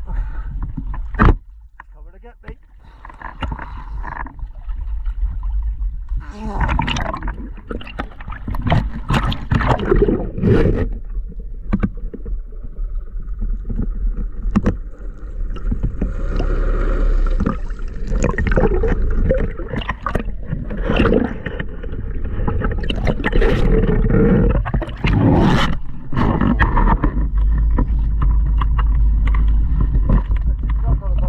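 Sea water splashing and slopping around a camera held at the surface in choppy water, with a boat's engine running low as the boat comes alongside the diver.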